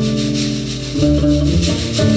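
Live acoustic maloya music: strummed acoustic guitar and a small plucked lute over plucked double bass, with a steady rhythm of strummed strokes; the bass moves to a new note about a second in.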